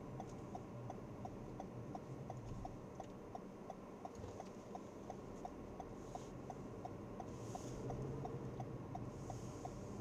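Car turn-signal indicator ticking evenly, about three ticks a second, during a right turn. Underneath is the low drone of engine and road noise heard inside the cabin.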